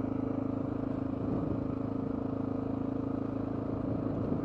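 Honda XR650L's single-cylinder four-stroke engine running at a steady, even pace while the motorcycle cruises along a gravel road, heard from the rider's helmet.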